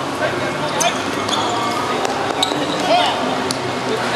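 Football being kicked and bouncing on a hard five-a-side court: several sharp knocks spread through the moment, over players' shouts and calls.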